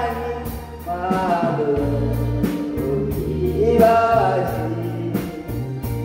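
An elderly man singing a Japanese song into a microphone, backed by a live band with drums, bass guitar, electric guitar and keyboard. A wavering vocal melody sits over steady bass notes and regular cymbal strokes.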